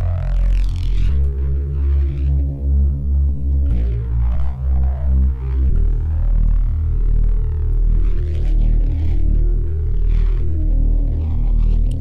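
Neuro bass synth patch built in Bitwig's Poly Grid, playing sustained low notes through amp-style distortion, its gritty upper tones sweeping and shifting. The note changes pitch about a second in, again near four seconds and near six seconds.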